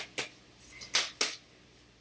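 A deck of tarot cards being shuffled by hand: four or five sharp card slaps and flicks in the first second and a half.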